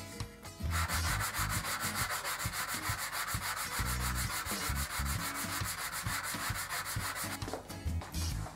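A small pine workpiece rubbed by hand in rapid back-and-forth strokes over a sandpaper block, giving an even, rhythmic rasping. It starts about a second in and stops shortly before the end.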